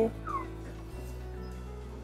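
A newly hatched ostrich chick gives one short, falling peep about a third of a second in, over quiet background music.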